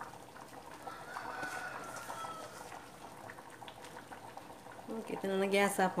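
Chickens calling in the background: a faint drawn-out call about a second in, then a louder, wavering call near the end.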